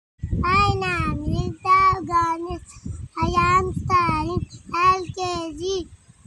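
A young boy singing in steady, held notes, in a string of short phrases with brief breaks between them.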